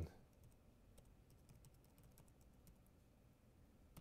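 Faint computer keyboard typing: an irregular run of quick key clicks.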